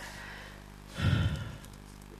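A woman's heavy sigh into a close microphone about a second in, one short breath lasting about half a second.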